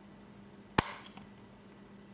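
Canon EOS R6's memory-card slot door clicking open: one sharp click a little under a second in.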